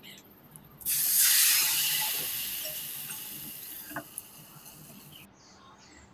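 Liquid ladled from a pot onto a hot iron pan over a wood fire, sizzling. It starts suddenly about a second in, fades steadily over several seconds, and cuts off abruptly near the end.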